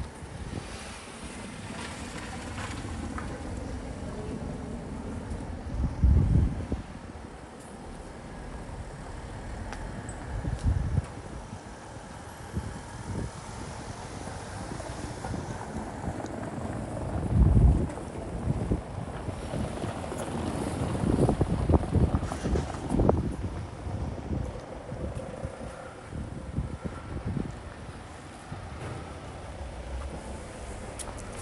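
City street ambience with traffic going by, broken by gusts of wind buffeting the microphone, the strongest about six and seventeen seconds in and a run of them around twenty to twenty-three seconds.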